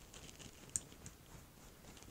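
Faint, soft brushing of a Tarte foundation brush being worked over the skin to blend liquid foundation, with one small sharp click a little under a second in.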